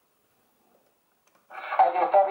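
Near silence, then about one and a half seconds in a man speaking Italian comes in suddenly from a medium-wave AM broadcast received by a 1923 S.F.R. Radiola Radiostandard regenerative tube set and played through a Radiolavox loudspeaker. The voice sounds thin, with no treble.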